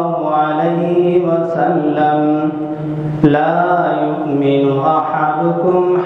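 A man's voice in slow melodic religious chanting, holding long notes that glide and waver from one pitch to the next. A brief sharp click sounds about three seconds in.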